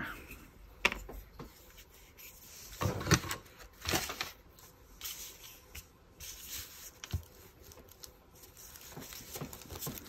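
Small handling sounds of a glue stick and paper: a few soft knocks and clicks as the stick and its cap are handled, then the glue stick rubbing across paper near the end.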